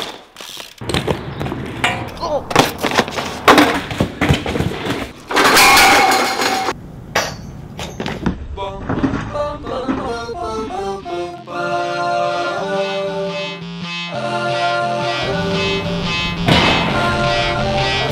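BMX bike riding sounds: knocks and clatter of the bike and tyres on concrete, with a harsh scrape lasting about a second and a half around five seconds in. From about eight seconds music with sustained melodic notes takes over.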